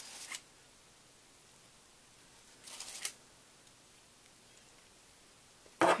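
Two brief rustles, about three seconds apart, from a frosted cupcake in its paper liner and a plastic piping bag being handled on a foil cake board.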